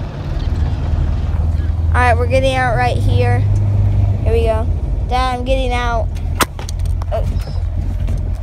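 Steady low rumble of a car heard from inside the cabin, with a voice making short wordless sounds over it several times.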